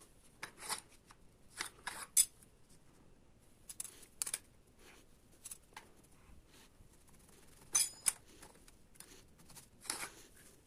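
Thin aluminum cooling fins clicking and clinking against a brass cylinder as they are slid and pushed onto it by hand: scattered light metallic taps, the loudest about two seconds in and just before eight seconds, that one with a brief ring.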